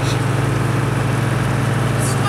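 Engine of a research trawler running steadily while under way: an even, low drone with a hiss over it.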